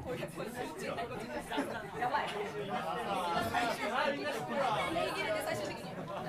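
Indistinct chatter of several people talking over one another in a small live-music hall, with no music playing.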